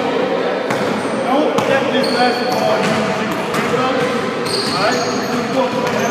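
Basketballs bouncing on a gym floor, a string of irregular thuds, under a steady hubbub of overlapping voices.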